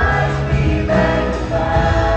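Live worship band: a woman and a man singing together, holding long notes, over acoustic guitar and a drum kit.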